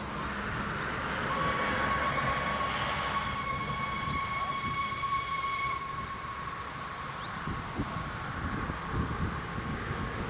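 Distant steam locomotive whistle from a rack railway train: one long, steady blast starting about a second in, fuller at first and thinner after about six seconds, sounding until near the end.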